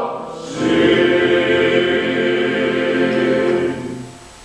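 Male vocal ensemble singing Greek Orthodox church hymnody a cappella. One phrase ends, and after a short breath a new chord begins about half a second in. The chord is held steady, then falls away near the end.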